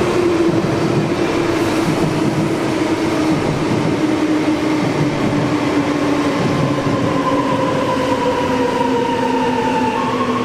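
DB double-deck Intercity 2 train with a Class 147 electric locomotive running into the station. The electric drive whine falls slowly in pitch over the rolling noise as the train slows.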